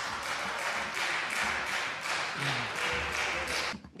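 Applause, many people clapping together in a steady dense patter, which cuts off suddenly just before the end.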